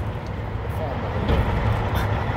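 A low, steady rumble of background noise, with a faint voice in the middle.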